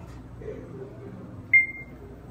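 Schindler 3300 elevator car's chime: a single short high beep about one and a half seconds in, fading out quickly, as the car reaches its floor.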